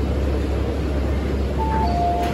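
MTR M-Train standing at the platform with its doors about to open: a steady low hum under even station noise. Near the end a two-note chime sounds, a higher note then a lower one, as the doors open.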